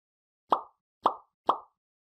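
Three short pop sound effects about half a second apart, each sharp at the start and dying away quickly, accompanying the like, comment and share icons of an animated outro.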